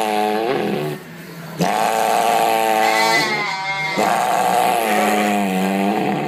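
A sheep bleating loudly in long, drawn-out calls: one ending about a second in, then two more of about two seconds each.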